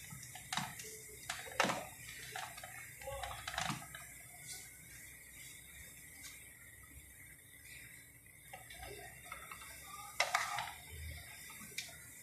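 Wooden spatula scraping and knocking against a non-stick frying pan as a frying paratha is turned and lifted out. A few short, sharp scrapes and taps, the loudest just after ten seconds in.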